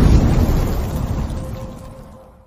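Logo-animation sound effect: a deep, thunder-like rumble that is loudest at the start and fades away over about two seconds.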